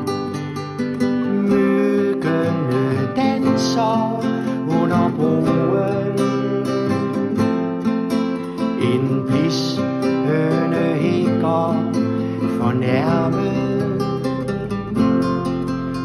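Strummed acoustic guitar with a bass line and a melodic lead line, an instrumental passage of a folk-style song.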